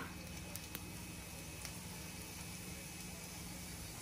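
Cumin seeds sizzling faintly in hot oil in a kadhai, a steady low hiss with a couple of faint pops in the first second.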